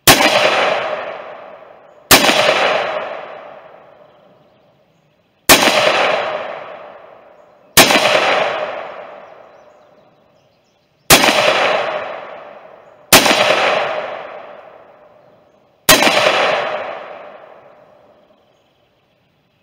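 Seven single shots from a semi-automatic AR-15 rifle, fired a couple of seconds apart at an uneven pace. Each crack is followed by a long echo that fades over about two seconds.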